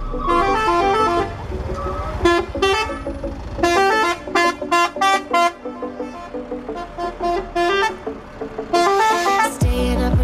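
Multi-tone musical truck horns blaring short pitched beeps in quick succession that step up and down like a tune, over a low engine rumble as the trucks pass.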